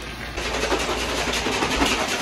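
A steady hiss that starts about a third of a second in.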